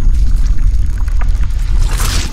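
Logo-intro sound effect: a loud, deep rumble with scattered crackles, swelling into a whoosh near the end.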